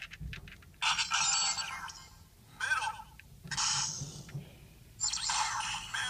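Melon Lockseed toy's small built-in speaker playing short electronic sound effects in four bursts as the lock is worked, the last one starting about five seconds in and running on.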